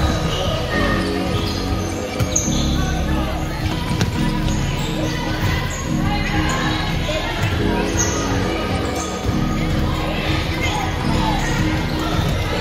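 Basketballs bouncing and being caught on a hardwood gym floor, with children's voices in a large hall and light background music.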